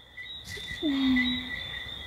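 A steady, high, continuous chorus of night insects. About a second in, a person makes a short wordless "hmm" that dips in pitch and then holds.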